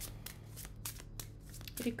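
Tarot cards being shuffled by hand: a quick, irregular run of light card clicks and slaps over a steady low hum.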